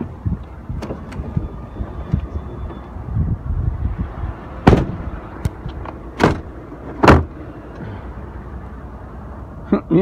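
Rustling and knocking of hands and a phone against a pickup truck's open door, with several sharp clunks, the loudest about seven seconds in.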